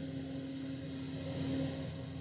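Rotary piling rig's engine running steadily: a low, even drone that swells slightly about one and a half seconds in.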